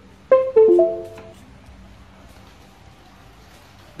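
iNMOTION V8 electric unicycle's power-on chime: a short melody of about four quick notes, lasting about a second, that starts a moment after the power button is pressed and signals the wheel switching on.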